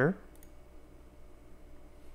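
A couple of faint computer mouse clicks in close succession, over quiet room tone, right after the end of a spoken word.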